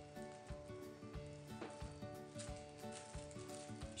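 Faint background music with held notes, and soft intermittent crinkling of a clear plastic oven bag as truffles are set into it by hand.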